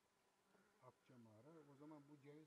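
Near silence, then from about halfway a faint buzz of a flying insect, wavering slightly in pitch.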